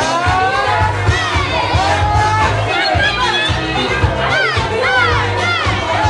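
Loud club music with a steady pulsing bass beat and a singing voice, over the noise of a crowd talking and shouting. A voice swoops up and down three times near the end.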